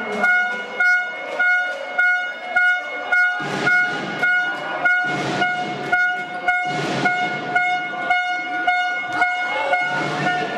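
Handball crowd with a horn blown at one pitch in short repeated blasts, about two a second, and sharp rhythmic beats alongside. Swells of crowd shouting rise a few times in the middle.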